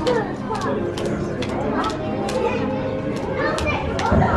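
Background chatter of several people talking at once in a large room, with no single voice close by.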